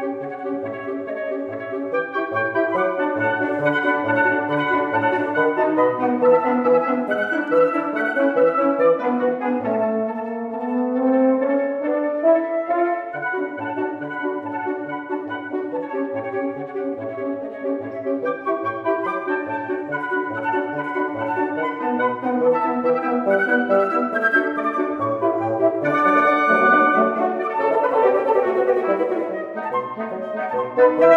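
Woodwind quintet (flute, oboe, clarinet, French horn and bassoon) playing an operetta overture, several voices moving together without pause. About ten seconds in, a low line climbs upward in a rising run.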